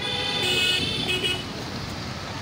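Vehicle horn honking in road traffic: one long toot of about a second, then a short second toot just after, over the noise of passing cars.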